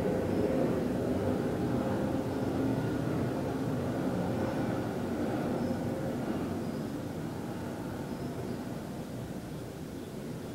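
A low, steady rumble of distant engine noise that slowly fades.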